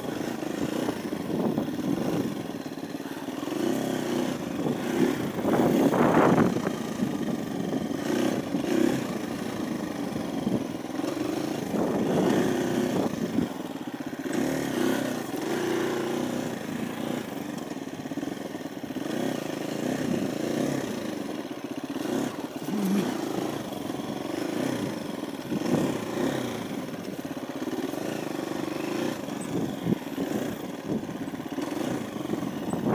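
KTM 350 EXC-F's single-cylinder four-stroke engine, revving up and down under changing throttle as the bike is ridden along a rough dirt trail. The loudest burst of throttle comes about six seconds in.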